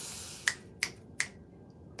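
Three sharp finger snaps, about a third of a second apart, made while trying to recall a name that won't come. A soft breathy hiss fades out just before the first snap.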